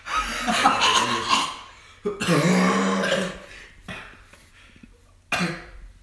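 A teenage boy coughing hard in two long fits, then a short one near the end, his throat burned by a taste of hot sauce.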